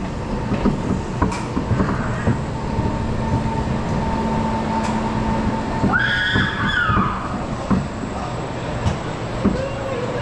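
Intamin steel roller coaster train rolling slowly along the track as the ride comes to an end, with a steady rumble and scattered knocks and rattles. A steady hum runs under it and stops about five and a half seconds in.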